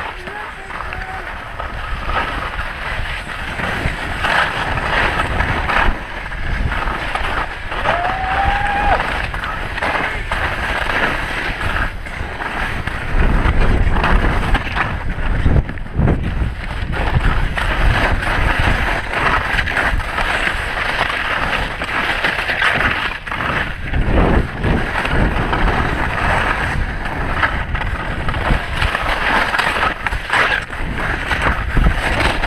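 Skis scraping and chattering over firm snow at speed, with wind buffeting the microphone as a steady low rumble.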